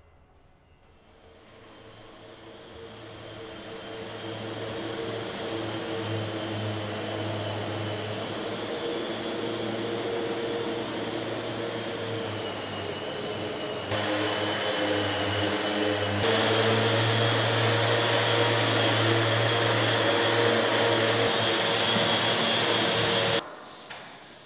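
A steady mechanical whirring drone with a low hum. It fades in over the first few seconds, jumps louder abruptly twice partway through and cuts off suddenly just before the end.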